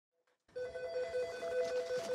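Office telephone's electronic ringer ringing in a rapid warbling trill. It starts about half a second in, after silence.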